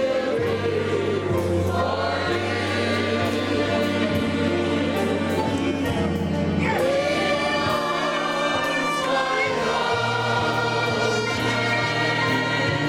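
A church congregation singing a gospel hymn together with instrumental accompaniment, over held bass notes that change every few seconds.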